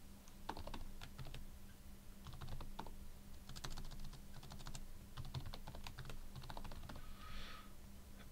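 Computer keyboard typing: quiet, irregular keystroke clicks in short runs, with brief pauses between them.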